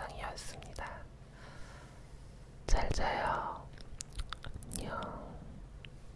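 A woman whispering close to the microphone, with a louder breathy whispered phrase about three seconds in.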